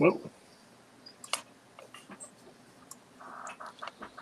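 Scattered light clicks of a computer keyboard and mouse, a few irregular taps over a quiet room, after a single spoken "well".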